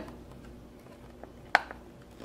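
Clear plastic blister packaging of a diecast toy car being handled: faint ticks and rustles, and one sharp plastic click about one and a half seconds in.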